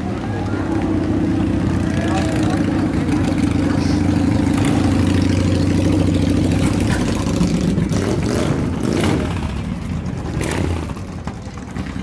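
Cruiser motorcycle engines running as the bikes ride slowly past at close range, with a steady low engine note for most of the time and a couple of pitch sweeps from the throttle in the last few seconds. Voices of people in the crowd mix in.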